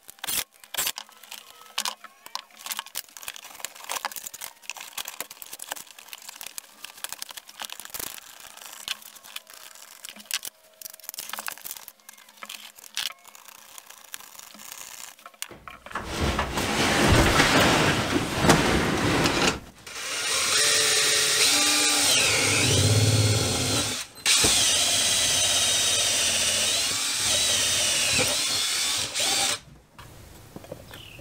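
Small clicks and knocks of hand work on duct fittings, then a power drill running loudly in three long stretches from about halfway through, its pitch rising and falling as the trigger is worked.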